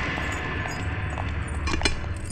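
Low steady rumble, with two sharp metallic clinks close together near the end.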